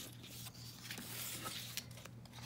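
Faint rustling and light handling sounds as paper paint-chip cards and small objects are moved about on a tabletop, with a few soft ticks over a steady low hum.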